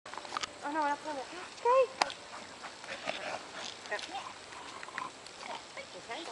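A small Pomeranian-type dog giving two short, high whining calls that rise and fall in pitch, the second and louder a little under two seconds in.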